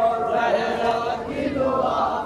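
A group of men chanting a noha, a Muharram lament, together in unison, holding long notes and moving between pitches.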